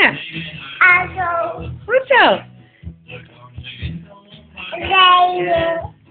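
A toddler singing a children's song in short phrases, with a quick swooping slide down in pitch about two seconds in and a longer held phrase near the end.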